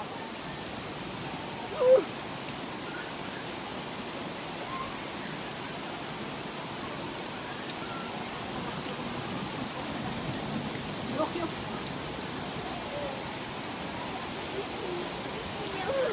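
Steady hiss of rain mixed with hail falling on leaves, over the rush of a swollen, muddy river. A short voice sound cuts in about two seconds in.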